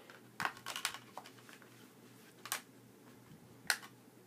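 Hands handling disc cases and packaging: a cluster of light clicks and rustles about half a second in, then single clicks near the middle and near the end, the last the loudest.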